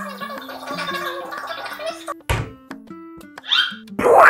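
Cartoon sound effects over light background music: a dense, wavering effect for the first two seconds, a thunk a little after two seconds, then a rising whistle near the end.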